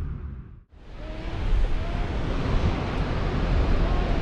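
Steady wind on the microphone over surf breaking on a beach, starting after a brief silence about two-thirds of a second in.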